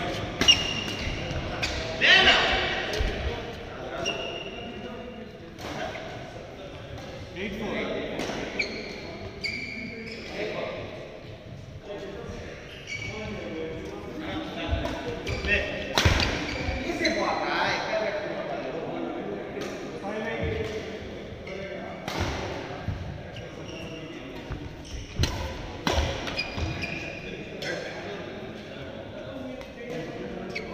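Badminton doubles rally: racket strings strike the shuttlecock with sharp hits every second or two, mixed with short high squeaks of shoes on the court mat. Everything echoes in a large hall.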